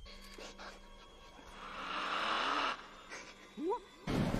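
A long breathy exhale, then a short vocal sound rising sharply in pitch near the end, over a faint steady hum.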